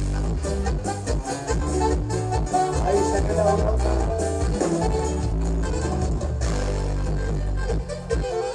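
Live Mexican regional band music: a steady, prominent bass line under a melody, playing without a break.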